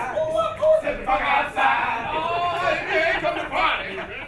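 Several men's voices shouting and chanting together in a stage step-dance routine, pitched voices that rise and fall in short bursts.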